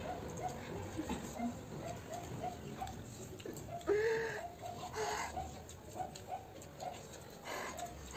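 Faint short chirps repeating about twice a second from a small animal or bird, with one louder pitched whine-like call about four seconds in, over soft eating and slurping sounds.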